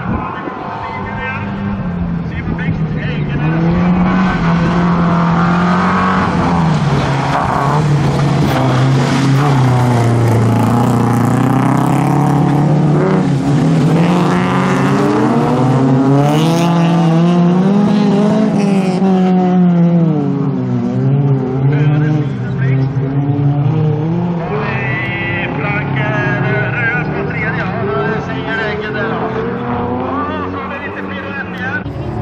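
Several bilcross race cars racing past together, their engines revving up and down as the drivers accelerate and lift through the corners. The sound grows louder about four seconds in.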